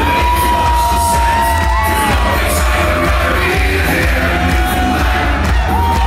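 Loud amplified music with a heavy bass, and a packed hall crowd yelling and singing along. A long held note opens it.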